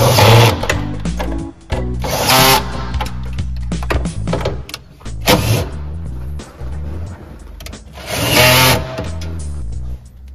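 Cordless drill-driver running in four short bursts, at the start, about two seconds in, about five seconds in and about eight seconds in, over background music.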